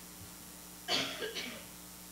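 A single short cough about a second in, over a faint steady hum.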